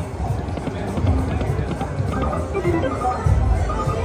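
Video slot machine playing its bonus-feature music, with short melodic tones and low thuds, during a winning bonus round.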